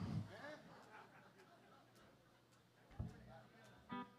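Near-silent pause: faint voices in the room, with a soft thump about three seconds in and another near the end.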